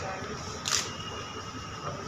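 A single brief, sharp camera shutter click about a third of the way in, over low room noise.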